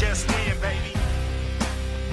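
Background music with a heavy bass and a steady drum beat, with no vocal in this stretch.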